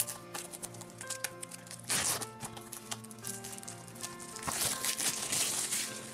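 Plastic shrink-wrap crinkling and tearing as it is peeled off a Blu-ray case, in bursts about two seconds in and again near the end, over soft background music.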